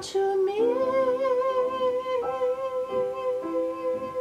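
A soprano singing with an upright piano: a short note, then a slide up into one long held note with vibrato, over piano chords, with fresh chords struck twice in the second half.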